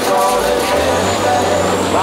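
Movie soundtrack: a bulldozer's engine rumbling as it crushes a car, a low rumble that swells about half a second in, under the film's music score.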